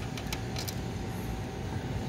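Steady running noise with a faint constant whine through it, and a couple of light clicks in the first second.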